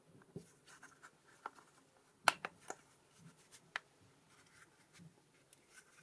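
Fingers prying a snug OnePlus Sandstone bumper case off a OnePlus 9 phone: scattered small clicks and snaps of the case edge, the sharpest about two seconds in.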